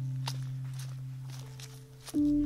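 Footsteps on a muddy, leaf-strewn dirt track, several crisp steps, over soft background music with long held tones that fades down near the end.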